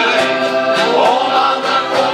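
A shanty choir singing together, accompanied by accordions.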